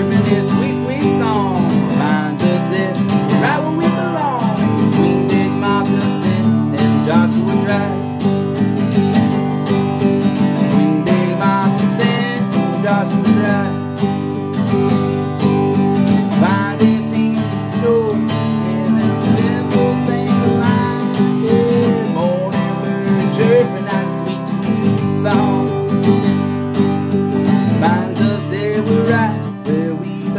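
Acoustic guitar strummed steadily with a man's singing voice over it, drawn-out sung lines rising and falling.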